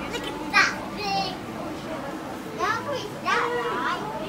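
Young children's voices: about four short, high-pitched calls and exclamations with no clear words.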